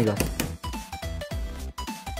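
Electronic tune from a coin-operated 5-6-7 ball pinball slot machine: single beeping notes stepping up and down in pitch, with a few sharp clicks among them.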